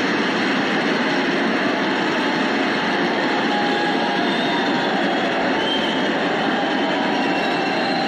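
A steady, dense rushing noise with a few faint, high squealing tones.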